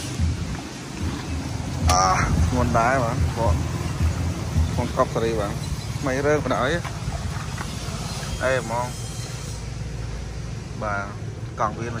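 A low steady engine rumble runs throughout, with a voice talking over it in short phrases from about two seconds in.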